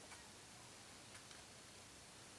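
Near silence with a few faint ticks, about three: fingertips tapping and swiping on the glass screen of a Samsung Galaxy S6 Edge.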